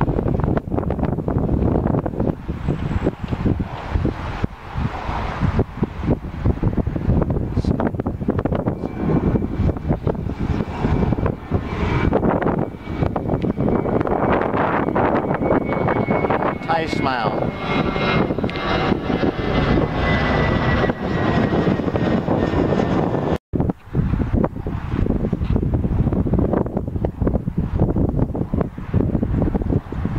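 Twin-engine jet airliner climbing out and passing overhead just after takeoff, its engines running loud, with a thin whine that falls slowly in pitch as it goes over in the middle. Gusty wind buffets the microphone throughout.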